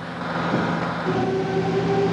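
A steady rumble that swells about half a second in, joined about a second in by a steady, even-pitched hum.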